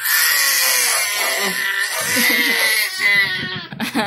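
A baby screaming in anger: one long, loud, high-pitched scream lasting about three seconds, followed by a shorter one that breaks off just before the end.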